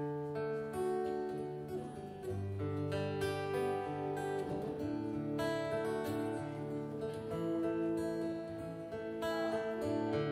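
Amplified acoustic guitar strumming a song intro, with no singing: held chords that change every second or two.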